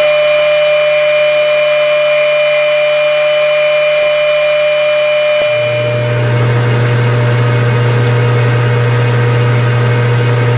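Metal lathe running with a steady motor and gear whine while a tailstock-mounted twist drill bores into a small part spinning in the chuck. A little past halfway the whine drops in pitch and a deeper hum takes over.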